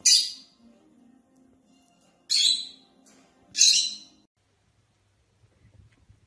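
Lovebird giving three short, shrill screeching calls: one at the start, then two close together a little past two seconds in, with faint background music underneath.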